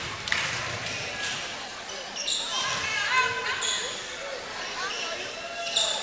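Basketball dribbled on a hardwood gym floor, with a cluster of short sneaker squeaks in the middle and crowd voices around the court.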